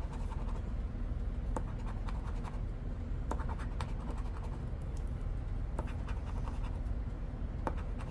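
A large coin scratching the coating off a scratch-off lottery ticket, in quick short strokes that make scattered scrapes and small clicks, over a low steady hum.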